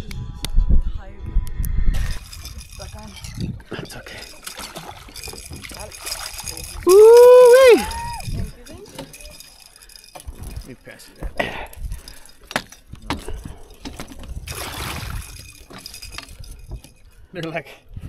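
A person's loud, high-pitched excited whoop about seven seconds in, rising and falling in three quick arcs, over scattered knocks and clatter on a boat deck.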